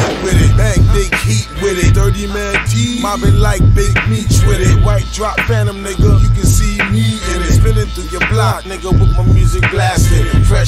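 Hip hop track: a rapper's voice over a beat with a heavy, repeating bass.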